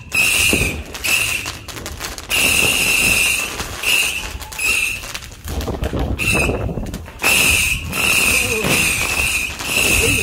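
Fireworks going off in the sky: sharp bangs among about a dozen short, shrill, high-pitched bursts, each lasting under a second.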